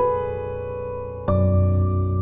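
Soft background piano music. A chord is struck at the start and another a little over a second in, each left to ring. The second chord has a deeper bass note.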